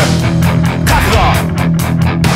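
Melodic hardcore rock music: electric guitars and bass playing a loud, driving rhythmic riff, with no singing.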